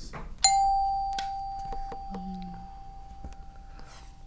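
A quiz-show ring-in bell chimes once, about half a second in: one clear tone that rings on and fades slowly through the next few seconds, with a few faint knocks after it.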